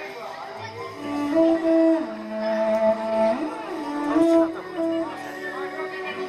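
Morin khuur (two-string horsehead fiddle) played solo with a bow: a slow melody of long held notes that slide from one pitch to the next, with a low note sounding under the melody about a second in.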